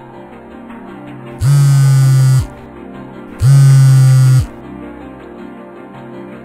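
Two loud, harsh electric buzzes, each lasting about a second and starting and stopping abruptly, a second apart, over background music.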